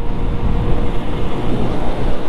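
Wind rushing over the microphone with road noise while riding a Honda Biz 100 at cruising speed, its small single-cylinder engine running steadily underneath.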